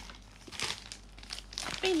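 Packaging crinkling and rustling in bursts as it is handled and opened, with a short spoken word near the end.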